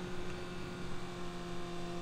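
Steady low electrical hum over a faint hiss, unchanging in pitch: room tone of the voiceover recording, with no engine sound.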